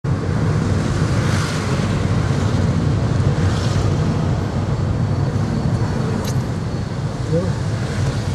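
Steady low rumble of a car being driven, heard from inside the cabin: engine and tyre noise at a constant level.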